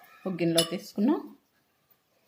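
A metal spoon clinking and scraping against a glass bowl as food is stirred, under a woman's short burst of speech in the first second and a half.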